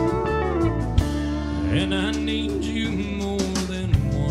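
Country band playing an instrumental passage live: a steel guitar sliding between sustained notes over electric guitar, bass and drums, with a sharp drum hit about a second in and another near the end.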